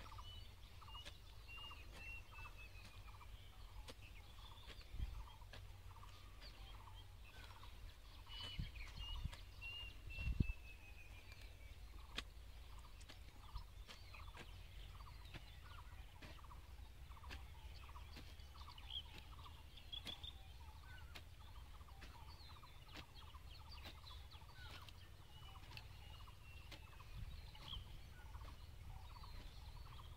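Birds calling: one short call repeating evenly about twice a second, with a falling series of higher notes now and then. A few dull thuds, the loudest about ten seconds in, fit a hoe blade striking the soil.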